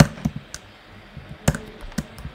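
A few separate computer keyboard keystrokes while code is typed. The loudest come right at the start and about a second and a half in.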